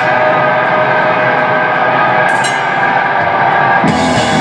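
Distorted electric guitar played alone in a live heavy band set: a steady, sustained ringing part with no drums under it. The drums and full band come back in with a hit right at the end.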